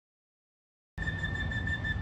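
Dead silence, then about a second in a small handheld flute-type wind instrument starts one long high note held steady, over a low outdoor rumble.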